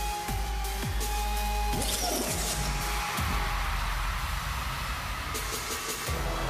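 Electronic dance-break music: deep bass hits that slide down in pitch, a bright noisy swell about two seconds in, then a steady heavy bass texture.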